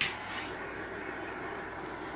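Butane kitchen torch lit with a sharp click, then its flame hissing steadily as it is held over wet acrylic paint.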